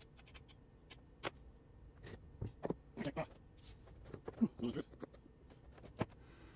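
Scattered clicks and knocks of hand tools and metal hardware while the bolts holding an electric motor to a belt grinder's frame are tightened, with a few brief mutters in between.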